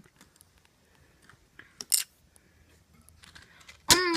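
Handling noise of small objects on a hard tabletop: a few faint scattered clicks and taps, with a sharper tap about two seconds in and another just before the end.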